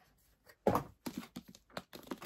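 A hardcover book and its paper dust jacket being handled: short rustles and light knocks, with one louder rustle about two-thirds of a second in.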